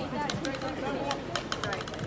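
Distant voices of players talking across an open field, with a quick run of sharp clicks in the second half.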